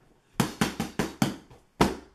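Boxing gloves hitting a pad in a quick run of about six sharp smacks, then one louder strike near the end, with a short echo off bare walls.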